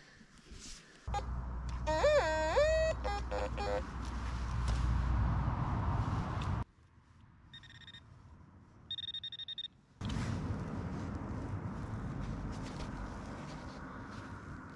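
Metal-detecting signals: a warbling detector tone about two seconds in over low rumbling noise on the microphone, then two short high electronic buzzes near the eight- and nine-second marks as a pinpointer is pushed into the dug hole, signalling a metal target in the soil.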